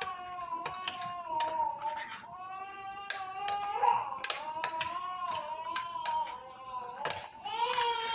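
A teething, unwell baby crying in the background in long, wavering wails. Repeated sharp clicks of a spoon against a bowl from stirring run through it.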